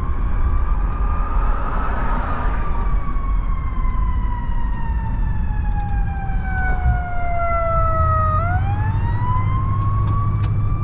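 A siren wails: its pitch rises, falls slowly over several seconds, and climbs again near the end. Under it runs the car's steady low road noise.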